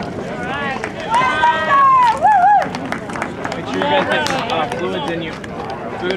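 Spectators yelling as the batter runs, with one long high-pitched shout about a second in and a shorter wavering one just after, then scattered calls.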